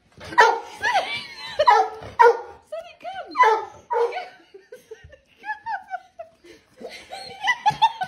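A dog vocalizing in a string of short whines and yips that bend up and down in pitch, with a person laughing.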